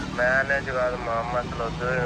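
A man talking on a mobile phone call, over a steady low hum in the background.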